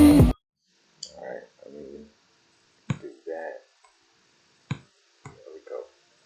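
Pop song playing through computer speakers cuts off abruptly just after the start as the video is paused. Two sharp mouse clicks follow, about two seconds apart, as the video is scrubbed back.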